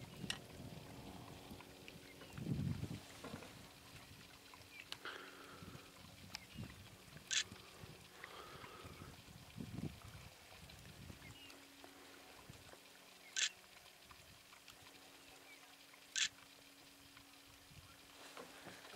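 Quiet outdoor ambience with three short, sharp high-pitched sounds spaced several seconds apart and a few low bumps, over a faint steady low hum.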